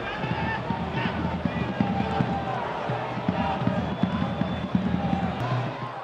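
Football stadium crowd noise: a steady mass of voices with some chanting, over irregular low thuds. It eases off slightly near the end.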